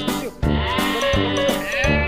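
Upbeat background music with a steady beat, and a goat bleating over it, one long wavering call from about half a second in until near the end.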